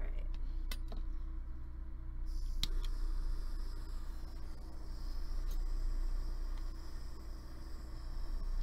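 A soldering torch being lit: a sharp click, then a steady gas hiss that starts suddenly about two seconds in and holds, over a low steady hum.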